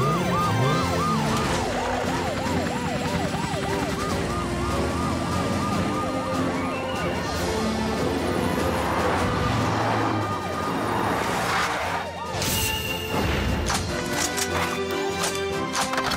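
Animated police car's siren wailing in quick repeated up-and-down sweeps, over action background music. The sweeps fade out about seven seconds in and the music carries on.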